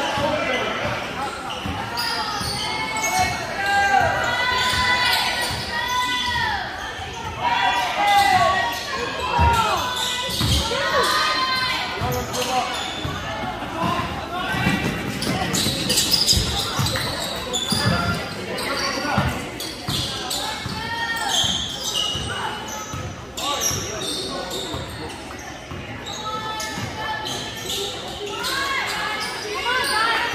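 Basketball game sounds in a large, echoing gym: a ball bouncing on the hardwood floor and sneakers squeaking in many short chirps as players cut and stop.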